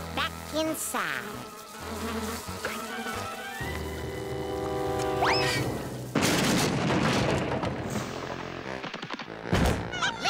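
Cartoon soundtrack of music and sound effects: steady low music tones, then a rising glide about five seconds in, then a loud, noisy stretch from about six seconds, ending with a sharp hit near the end.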